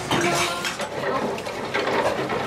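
Restaurant background din: indistinct chatter mixed with the clink and clatter of dishes and cutlery.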